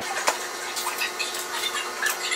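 A metal spoon scraping the seeds and stringy pulp out of a halved raw butternut squash: small, irregular wet scrapes, with a sharper knock about a quarter second in.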